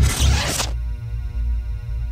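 Logo-sting sound effects: a whoosh that cuts off sharply under a second in, followed by a low held bass tone with faint steady tones above it.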